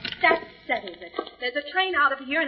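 Speech: radio-drama dialogue.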